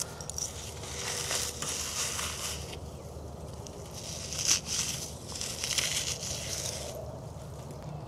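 Brittle charcoal from carbonized wafer bars being crumbled by hand into powder, making a gritty crunching and rustling with a few sharper crackles about halfway through.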